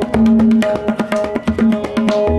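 Tabla solo in teentaal in the Ajrada style: rapid strokes on the dayan and bayan over a harmonium playing a steady repeating melody line (the lehra).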